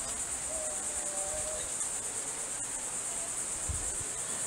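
A steady, high-pitched insect chorus from the trees. A faint short tone sounds about half a second in, and a low thump comes near the end.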